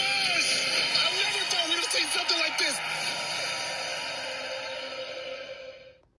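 Television promo sound played through a TV's speaker: voices over music, fading out near the end.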